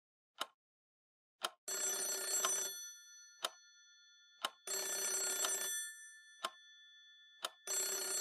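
A telephone bell ringing in three rings, each about a second long and three seconds apart, the last starting near the end. Under the rings, a sharp tick about once a second, like a clock.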